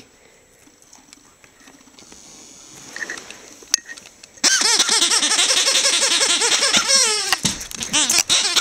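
Dog's squeaky toy squeaking rapidly and continuously, short rising-and-falling squeals one after another, starting suddenly about halfway through.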